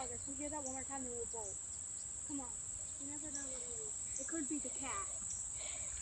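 Insects buzzing in one steady, unbroken high-pitched drone, with faint low voices underneath.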